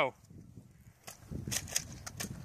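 Nerf foam-dart blasters firing: after a quiet first second, several sharp clicks in the second half.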